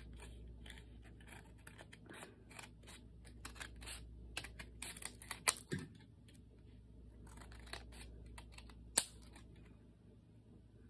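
Scissors snipping through paper: a run of short cuts trimming the edge of a sheet of scrapbook paper, busiest in the middle, with one sharper click near the end.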